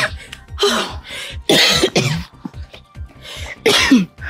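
A woman coughing hard several times, winded after a run, over background music.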